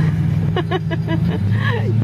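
A car engine drones steadily, heard from inside a car's cabin, and its note drops lower about one and a half seconds in. A person laughs and talks over it.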